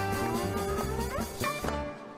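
Live band music: a soprano saxophone plays a phrase with sliding, rising notes over a pulsing electric bass line.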